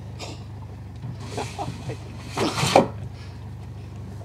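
A boat motor idling with a steady low hum, and people's voices briefly in the background, loudest about two and a half seconds in.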